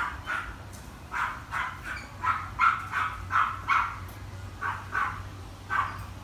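A dog barking repeatedly in a quick run of short barks, pausing briefly about four seconds in before barking again.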